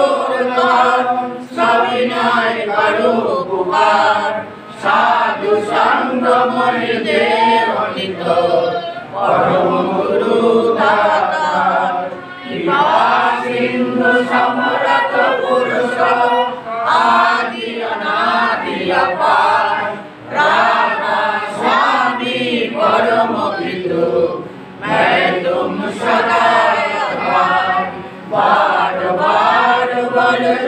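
A group of voices chanting a devotional prayer together in unison, unaccompanied, in long sung phrases with brief pauses for breath every few seconds.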